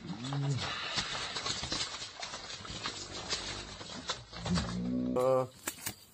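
Dense crackling and rustling of water hyacinth leaves and stems as a hooked lembat catfish is hauled out of the weedy pond on a pole rod, with a man's short grunted exclamations at the start and again near the end.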